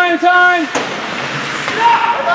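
A spectator's raised voice shouting the same short call three times in quick succession, then a sharp knock about three-quarters of a second in, followed by the general noise of the rink.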